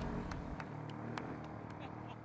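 Engines of two ATVs running as the quad bikes ride away over rough dirt, fading steadily, with a few short clicks on top.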